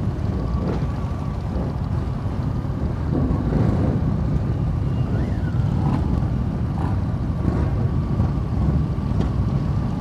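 A pack of motorcycles idling together in a queue, a steady low rumble of many engines.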